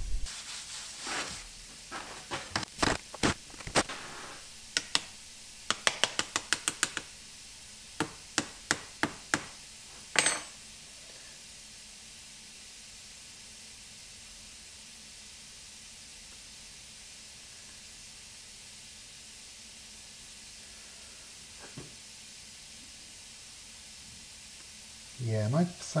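Sharp light taps and clicks from handling the sand mould and its aluminium flask, coming in quick runs of several a second for about the first ten seconds. After that only a faint steady background is heard.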